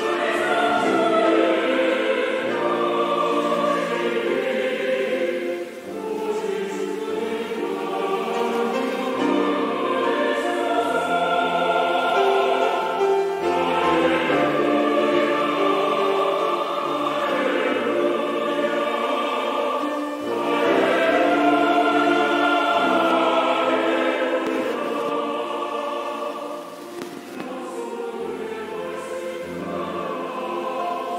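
A large choir singing a Korean sacred choral anthem in parts. The singing carries on steadily, with brief dips around 6 and 20 seconds in, and grows softer near the end.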